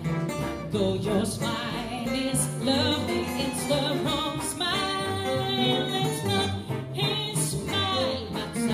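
A live acoustic swing band playing: rhythm guitars, walking double bass and a bowed violin, with a woman singing over them.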